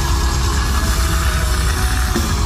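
Metal band playing live: electric guitars, bass and drums at full volume, heard through the venue's PA.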